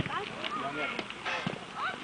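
Scattered voices of football players and spectators calling out across an open grass pitch during play, with a few sharp knocks among them.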